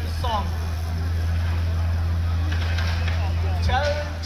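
A man speaking over a loudspeaker, pausing between phrases, with a short phrase just after the start and another near the end, over a steady low rumble.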